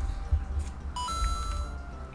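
A short electronic two-note chime sound effect, starting about a second in: a brief lower note steps up to a higher one held for most of a second. Underneath is a low rumble.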